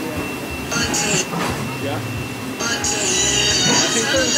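Background voices and chatter, with a hiss about a second in, then a louder sustained hiss and music coming in near the end.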